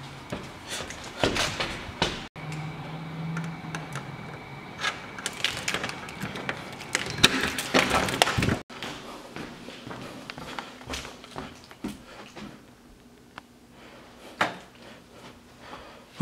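Footsteps and handling noise, then keys jingling and clicking at a keypad deadbolt as a door is unlocked and opened, a dense run of clicks and knocks. The sound breaks off abruptly twice.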